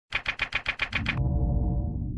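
Intro logo sting: a fast run of seven sharp, typewriter-like clicks, about eight a second, then a low steady sustained tone with a few fainter steady tones above it.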